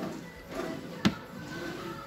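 A wooden drawer of a chest of drawers being pulled open, with one sharp knock about a second in. Faint background music underneath.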